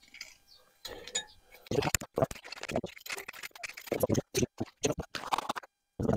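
Plastic garden rake scraping through loose, dry soil in a run of irregular strokes.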